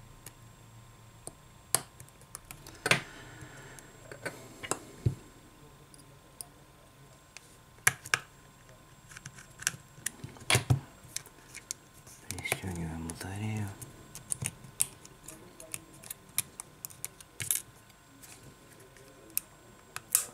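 Scattered sharp clicks and taps of metal tweezers and a tool against the small metal parts and frame of an opened iPhone 6 as the coaxial antenna cable connector is fitted, with a short indistinct murmur of voice about two-thirds of the way through.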